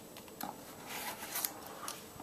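A knife blade scraping and cutting along the packing tape of a cardboard shipping box: quiet, irregular scratching with a few sharp clicks, the sharpest about a second and a half in.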